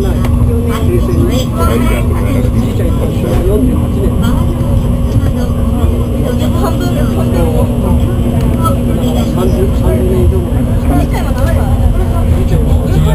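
Cabin running noise of an N700 series Shinkansen travelling at speed: a loud, steady low rumble with a steady hum. Faint voices of passengers talking run underneath.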